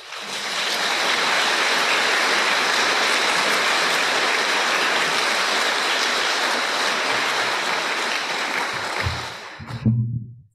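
Audience applauding in a hall, a dense steady clapping that swells in the first second and dies away near the end.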